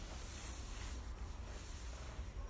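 Steady hiss with a low rumble and no distinct events: background noise of a handheld phone recording.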